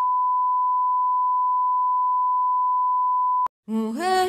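A steady single-pitch test-tone beep, the kind played with television colour bars, holding level and then cutting off suddenly about three and a half seconds in. Music with singing starts just before the end.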